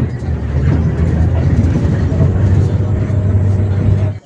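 Steady low engine drone and road rumble heard from inside a moving vehicle.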